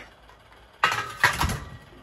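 Stainless steel grill tray and rack from a gas hob's grill clattering, metal on metal, as they are handled: a quick cluster of clanks with a short ring, about a second in.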